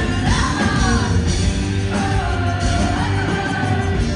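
A live rock band playing, with a woman singing a lead vocal line that slides up and down over electric guitar and the band.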